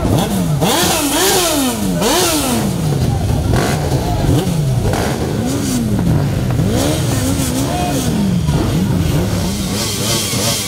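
Motorcycle engines revved again and again, the pitch climbing and dropping about once a second, over crowd noise.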